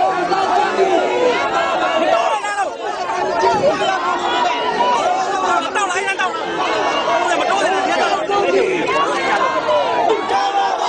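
Crowd chatter: many voices talking over one another at once, steady and unbroken.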